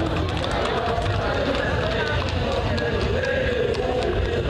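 Horses' hooves clattering on pavement as riders and a horse-drawn cart pass, among a crowd's voices over a steady low rumble.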